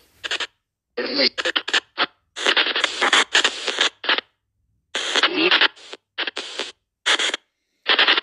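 Spirit box app sweeping through radio channels: irregular short bursts of static and chopped voice fragments, each cutting off abruptly into dead silence, with the app's noise gate switched on.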